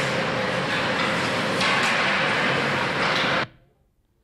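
Ice-rink practice noise from a video played over a hall's speakers: a loud, dense clatter and scrape of skates, sticks and pucks on the ice, which cuts off suddenly about three and a half seconds in.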